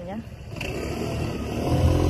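A car going by on the street, its engine hum growing louder toward the end.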